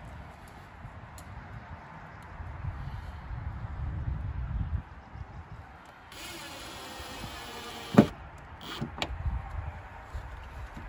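Cordless drill driving a one-inch screw through a metal Z-clip into the wooden tabletop: the motor runs steadily for about two seconds, ending in a sharp click, with a smaller click a second later. A low rumble comes before it.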